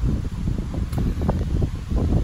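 Wind buffeting the phone's microphone outdoors: a steady low rumble.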